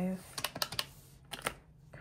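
Key presses on a desk calculator with round typewriter-style keys: two quick groups of sharp clicks as a subtraction is keyed in.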